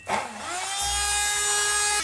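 Immersion blender motor starting up in a pot of cooked tomato and onion: a whine that rises in pitch over the first half-second, then runs steadily as it purées the tomato.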